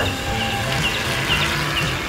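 Aerosol cans of shaving foam hissing and sputtering steadily as foam is sprayed out, one of them running low. Background music with a repeating bass line plays underneath.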